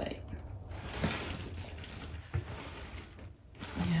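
A leather shoulder bag being handled and shifted on a table: scuffing and rustling with a few light clicks.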